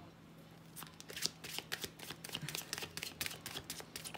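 A deck of tarot cards being shuffled by hand: a rapid, irregular run of soft card flicks and slaps that starts under a second in.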